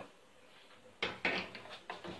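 A metal clatter about halfway through, fading quickly, then a shorter knock near the end: a saucepan double boiler set down onto the gas stove's grate.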